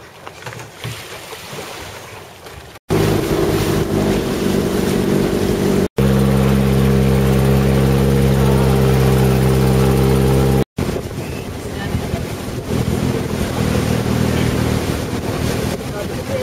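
Wooden Mekong river tour boat's engine running steadily and loudly, with a deep even drone, from about three seconds in. It breaks off abruptly several times and is somewhat quieter in the last stretch, with wind and water noise.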